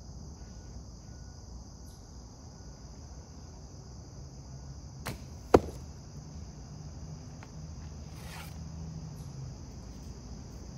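A shot from a vintage Browning Explorer recurve bow: a light snap about five seconds in, then about half a second later one loud, sharp crack, the arrow striking. Crickets chirr steadily throughout.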